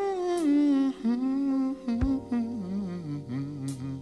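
Slowed, pitched-down soul vocal in a chopped-and-screwed remix: a long wordless hummed moan that glides slowly downward over sustained keyboard chords, with one deep drum hit about halfway through.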